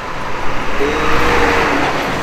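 A road vehicle passing close by: tyre and engine noise with a low rumble swells to a peak about a second in, then eases off.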